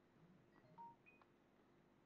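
Near silence: room tone, with a few very faint short electronic tones of different pitches around the middle.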